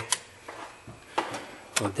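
A couple of short, light clicks from hands working the plastic fan shroud and its clips, one just after the start and one about a second in, with a spoken word near the end.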